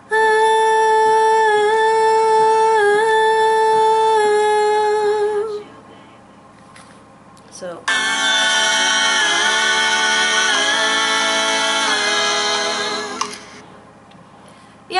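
A woman's voice singing one long sustained 'oh' line on four held notes. After a short pause, several multitracked recordings of her voice play back together as sustained 'oh' harmonies, changing chord four times.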